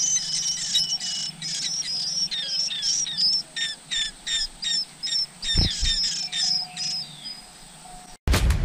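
Nestlings begging with rapid, high chirps, several a second, while an adult bird feeds them at the nest. A brief low thump comes a little past halfway, and the chirping thins out near the end.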